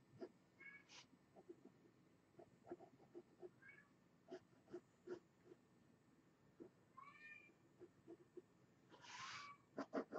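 A house cat meowing faintly for attention: short calls a few seconds apart, with a louder, breathier one near the end. It is begging, though it has just been fed.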